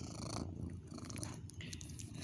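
A domestic cat purring steadily, its fur pressed right against the microphone.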